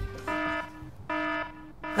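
Game-show "wrong answer" buzzer sound effect: two flat, level buzzes of about half a second each, with a short higher note just before the first, marking the answer as wrong.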